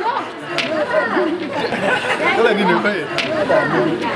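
Several people talking at once in casual chatter, with two brief clicks, one about half a second in and one near the three-second mark.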